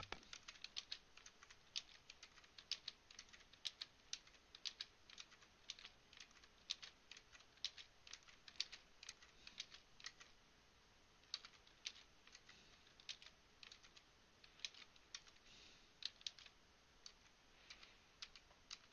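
Computer keyboard keys tapped in quick, irregular runs of faint clicks: cursor keys pressed to step between timeline markers, and a clip pasted at each one. The tapping pauses briefly about ten seconds in.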